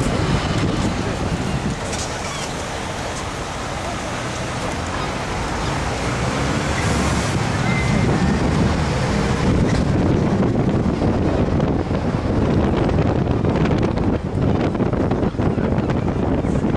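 Steady low rumble of a moving vehicle and road traffic, with wind buffeting the microphone and chatter from a busy street crowd.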